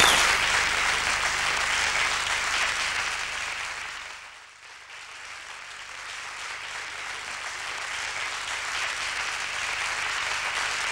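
Audience applauding after a live performance. The clapping fades down about four seconds in, dips briefly, then carries on more quietly.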